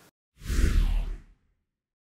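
A whoosh transition sound effect about half a second in, lasting about a second: a hiss that falls in pitch over a low rumble, then cuts off.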